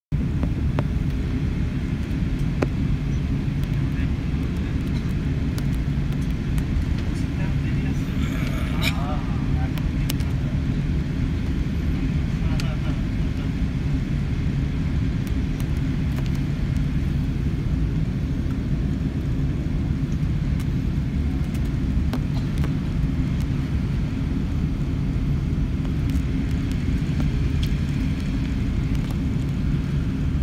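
Cabin noise of an Airbus A380-800 rolling on the ground after landing: a steady low rumble from the engines and airframe, with a few faint clicks and a faint voice about eight seconds in.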